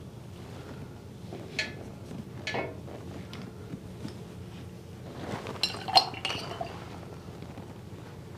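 A few scattered light clinks and taps of watercolour painting gear, brushes against palettes and a water jar, with a small cluster of them about six seconds in.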